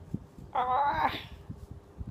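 A woman's brief, high-pitched exclamation of surprise, 'ao!' (Thai อ้าว), about half a second in.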